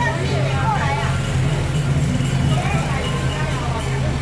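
Engine of a flower-decorated float truck running steadily, a constant low hum, with people's voices over it.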